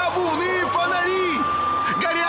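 Fire engine siren in a fast rising-and-falling yelp, repeating about twice a second over a steady high tone.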